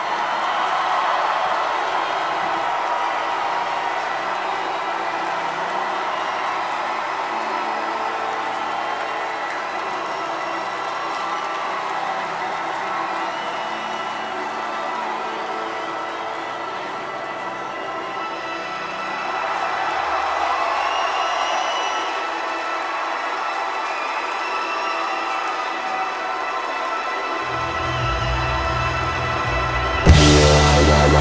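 Concert crowd cheering and whooping over a slow band intro of held tones and slowly changing low notes. Near the end a heavy, loud bass comes in as the opening song starts.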